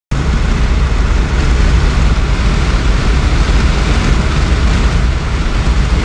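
Road and wind noise inside a moving vehicle's cabin: a loud, steady rumble with hiss.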